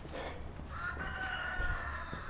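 A faint, drawn-out animal call lasting about a second, starting near the middle.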